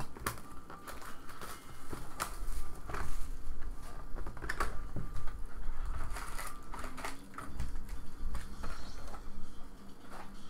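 A cardboard hobby box being opened and its foil card packs pulled out and stacked: crinkling foil wrappers with irregular clicks, scrapes and taps of cardboard and packs.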